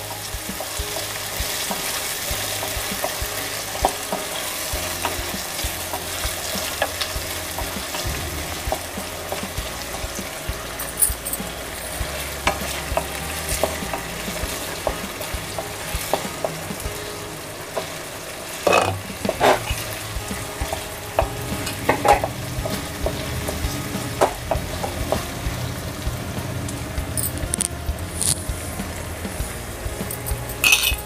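Chopped onions, tomatoes, cashews and green chillies sizzling steadily as they fry in oil in a pan, with a spatula scraping and stirring them; a few louder scrapes come in the second half.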